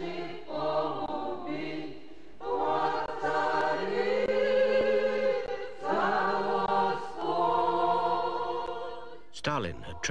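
A small choir of women singing Orthodox church chant unaccompanied, in long held phrases broken by short pauses.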